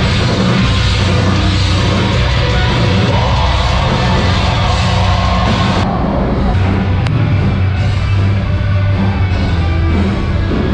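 A heavy metal band playing live, loud and continuous, with no break. About six seconds in, the sound turns suddenly duller, with its top end cut away, while the music carries on.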